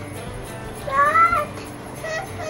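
A single short, high-pitched call, about half a second long, rising and then falling in pitch, about a second in. It could be a child's voice or a cat's meow.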